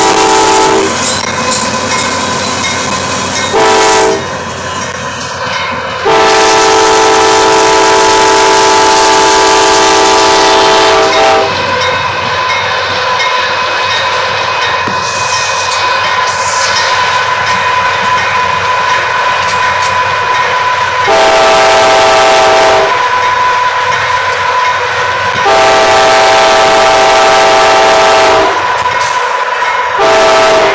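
Diesel locomotive's multi-chime air horn blowing a series of blasts, each a chord of several notes: two short ones, a long one of about five seconds, then two more in the second half and another starting right at the end.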